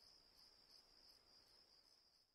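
Faint, steady chirring of crickets: a night-ambience sound effect.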